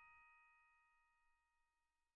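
Very faint tail of a bell-like ding: several ringing tones fade out over about a second and a half, leaving near silence.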